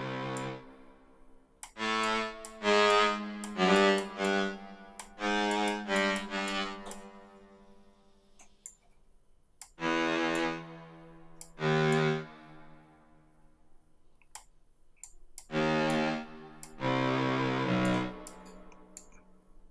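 Software synth cello preset (a synth-string patch in the Citrus plugin) sounding single short notes at changing pitches, one after another in small clusters, as notes are placed in a piano roll. Mouse clicks fall between the notes.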